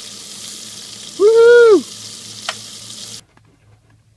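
Bacon sizzling in a frying pan, with a couple of sharp clicks from metal tongs. About a second in, a short loud whine rises and falls in pitch over the sizzle, and the sizzle cuts off suddenly near the end.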